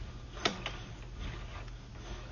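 A faint steady low hum, with two light clicks about half a second in.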